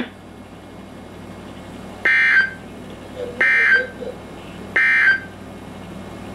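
Three short bursts of EAS/SAME digital data tones, the end-of-message code that closes a Required Weekly Test, played through a RadioShack NOAA weather radio's speaker. Each burst is a harsh warbling buzz of about a third of a second, and they come about 1.4 seconds apart over a faint hiss.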